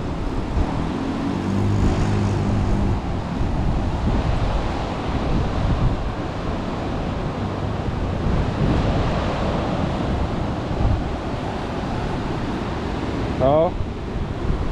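Wind buffeting the microphone over the wash of the sea, with a faint low steady hum for a second or two near the start.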